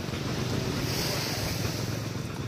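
Steady rushing noise of wind on the microphone and sea, over a low hum, swelling into a brighter hiss about halfway through.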